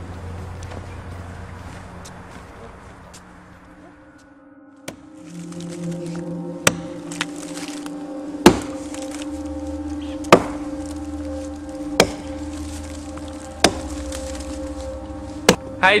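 Axe chopping into a tree trunk: about six sharp strokes, evenly spaced almost two seconds apart, over steady background music that comes in about five seconds in.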